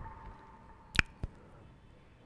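Two short clicks in an otherwise quiet room: a sharp one about a second in and a fainter one just after.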